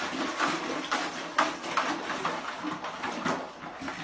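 A husky pawing and nosing inside a red plastic bucket on a tile floor: irregular knocks and scrapes of plastic.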